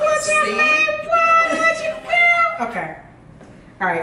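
A woman's voice singing three long, high held notes, followed by a short lull near the end.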